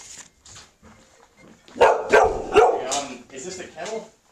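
A dog barking several times in quick succession about two seconds in, then a few quieter barks.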